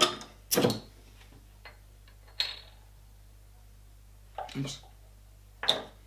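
A 330 ml glass beer bottle's crown cap pried off with a bottle opener: a few light clicks and one sharp pop with a short hiss about two and a half seconds in. Brief voice sounds come before and after it.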